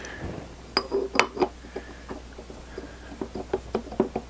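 Metal cutter disc clinking and tapping against the steel drive shaft and pin of a worm-drive gearbox as it is fitted on by hand: a few sharp clinks about a second in, then a run of lighter, irregular taps.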